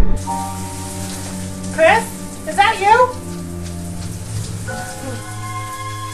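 Shower water running, a steady hiss, over sustained background music tones. Two short wavering voice-like sounds come about two and three seconds in.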